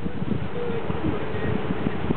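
Wind buffeting the microphone over the wash of choppy sea water, with a faint steady hum underneath.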